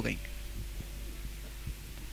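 A pause in speech filled by a steady low electrical hum from the microphone and sound system, with a few faint low thumps.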